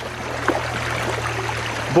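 Stream water rushing steadily over rocks and through a metal sluice box set into the current, with a single light knock about half a second in.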